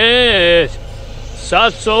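A man speaking, drawing out one long syllable and then a short word near the end, over the steady low hum of a Nissan's engine idling.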